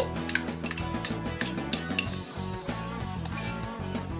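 Background music with a steady beat, over a few light clinks and scrapes of a wooden spatula against a small glass bowl.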